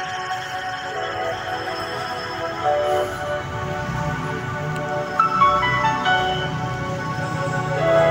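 Background music with slow, sustained melodic notes.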